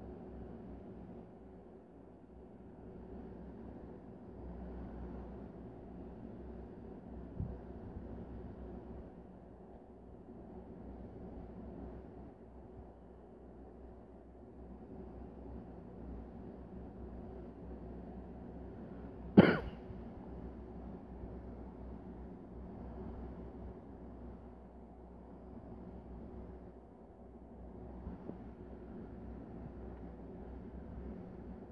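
Steady low room hum, broken about two-thirds of the way through by a single short, loud cough from a man.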